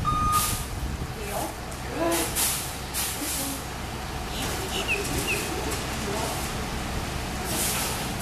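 A shuttle bus idling at the curb, with several short bursts of air hiss. An interrupted electronic beep stops just after the start.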